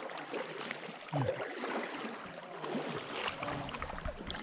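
A paddle working the water beside an inflatable canoe: splashing and water noise from the strokes, with a brief voice about a second in.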